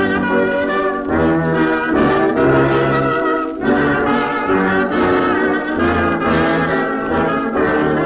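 1920s dance band playing an instrumental passage of a waltz, reproduced from a 78 rpm shellac record, with brass carrying sustained melody notes over a bass line that moves about once a second.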